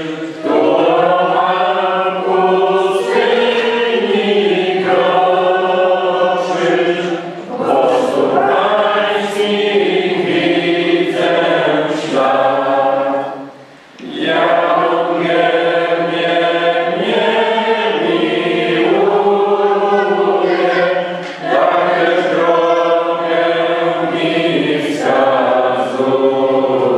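Choir singing in phrases of a few seconds, with a short break about halfway through.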